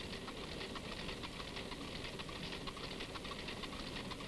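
Cigarette-making machine running with a steady, rapid mechanical clatter.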